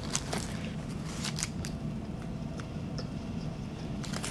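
A person chewing a mouthful of burger, with a few short wet mouth clicks, most of them in the first second and a half.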